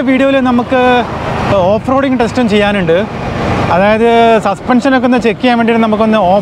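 A man's voice talking over a steady rush of wind and road noise.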